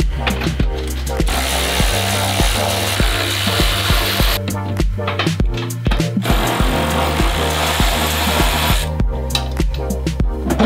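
A power tool runs twice, each time for about three seconds, over background music with a steady beat.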